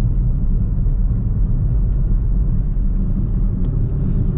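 Car driving along a road, heard from inside the cabin: a steady low rumble of road and engine noise.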